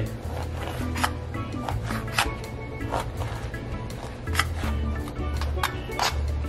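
A knife cutting a raw tilapia fillet into chunks, its blade tapping irregularly on a plastic cutting board. Background music with a steady bass line plays under it.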